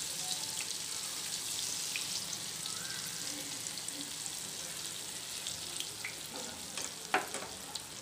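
Hot oil sizzling steadily around egg-coated chicken kebabs in a pan, with small crackles as beaten egg is trickled from the fingers into the oil to form a lacy egg net. A single light tap comes about seven seconds in.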